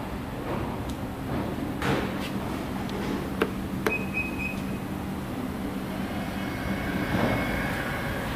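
A sharp click as the button on the inside of the Nissan X-Trail's raised power tailgate is pressed, followed by a short run of high beeps lasting about half a second: the warning that the tailgate is about to close itself. A steady low hum runs underneath.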